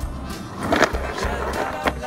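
Skateboard wheels rolling on asphalt, with a loud clatter of the board a little under a second in and a sharp clack near the end, over background pop music.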